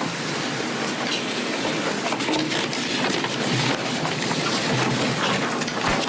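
Paper of a letter exhibit rustling and being handled close to a microphone, a continuous crackly rustle with many small clicks and no speech.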